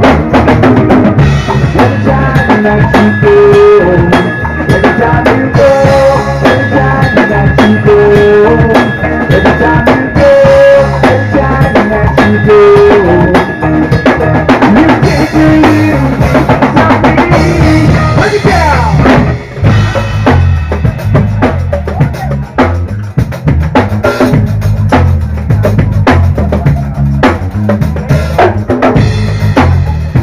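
Live rock band playing an instrumental passage: drum kit with bass drum and snare keeping a steady beat under bass guitar and a lead melody. A long held high note runs through the first half, and after a brief dip a little past the middle the drums come to the fore.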